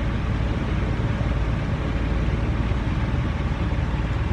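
Mini vortex mixer running with a plastic conical tube held down in its cup, shaking the sample: a steady mechanical whir, heaviest in the low end, without a break.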